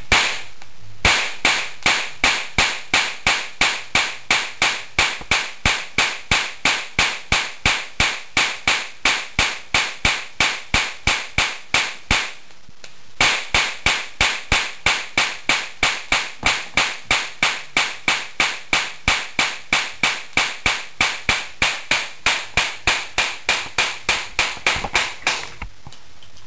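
High-voltage capacitor-discharge sparks snapping across a modified spark plug and its trigger spark gap, fired by a reed-switch and TIP42 coil circuit, with the plug wet from sprayed water. Sharp, evenly spaced snaps at about three a second, with a brief pause about halfway through before they resume.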